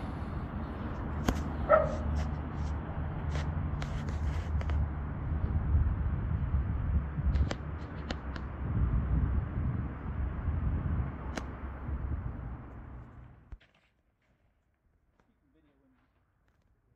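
Cleaning machinery running with a steady low hum and noise, with a few small clicks; it cuts off abruptly near the end.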